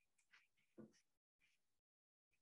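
Near silence: a pause in a lecturer's speech, with one faint, brief sound a little under a second in.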